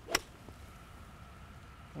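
A golf club striking a ball: a single sharp click just after the start.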